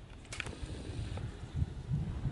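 Low, uneven wind rumble on the microphone, with a few faint clicks.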